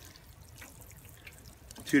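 Plastic watering can's rose sprinkling a faint, steady shower of water onto bare soil.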